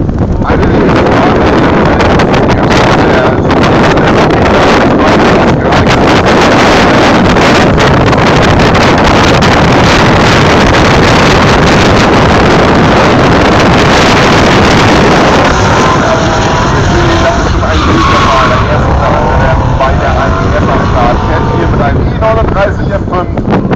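Drift cars sliding through a corner, engines held at high revs while the rear tyres spin and smoke, loud and steady. The sound eases a little after about fifteen seconds.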